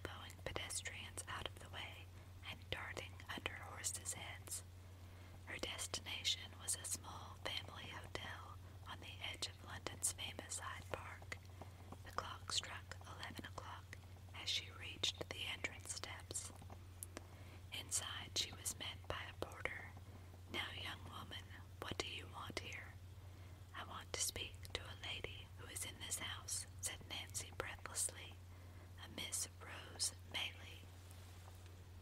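A voice whispering steadily in short phrases, with scattered soft clicks, over a steady low hum.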